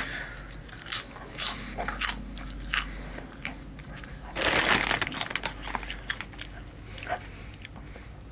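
Puffed lobster chips being bitten and chewed close to the mouth: scattered sharp crunches, then a denser, louder spell of crunching about four and a half seconds in as a fresh chip is bitten.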